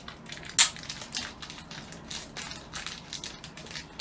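Crackling and irregular clicks as small can-badge kit parts are picked up and handled by hand, with one sharp click about half a second in.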